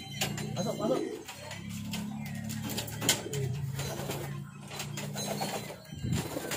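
Racing pigeons cooing in the loft: low, drawn-out coos following one another, with a few sharp clicks among them.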